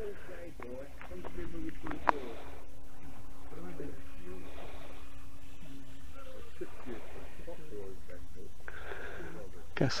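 Faint steady hum of a brushless-converted Carl Goldberg Mirage RC trainer's electric motor and propeller held at constant throttle high overhead. Low, indistinct voices run underneath.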